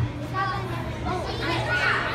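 Children's voices calling out inside a hurricane-simulator booth, over a steady hum and rush from the booth's wind blower. The voices get louder near the end.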